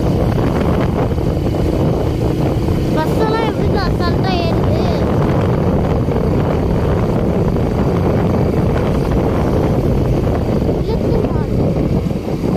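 A motorbike's engine running while riding, under heavy wind rush on the microphone. A voice is heard briefly a few seconds in.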